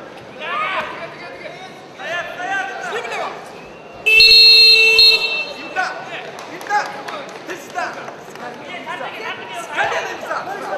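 A loud electronic buzzer sounds once for about a second, some four seconds in: a wrestling timekeeper's buzzer ending the period. Men's voices shout before and after it.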